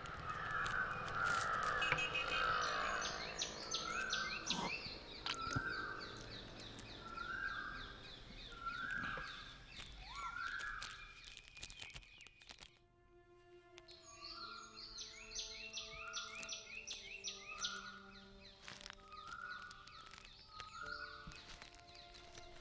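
Crows cawing over and over, about one caw every second and a half, with fainter chirping higher up. About halfway through, everything drops away for a moment, and after that soft held music tones sit under the caws.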